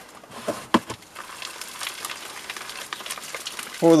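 Multi-purpose compost shaken through a plastic crate used as a sieve: two sharp knocks of the crate, then a steady rustling patter of soil falling through the mesh into the tray below.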